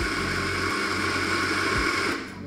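Eureka Libra grind-by-weight coffee grinder running steadily, its burrs grinding espresso beans into a portafilter toward a set 19 g dose.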